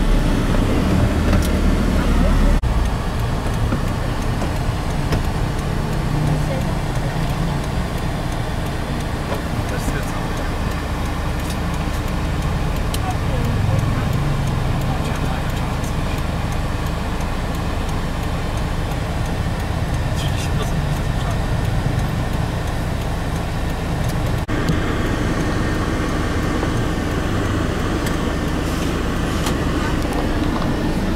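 Steady low engine and road rumble heard from a car driving through street traffic, with indistinct voices in the background. The sound changes abruptly twice, a couple of seconds in and near the end.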